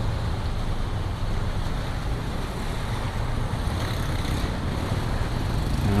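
Cars and motorcycles moving slowly through shallow floodwater: a steady low engine hum mixed with water sloshing around the wheels.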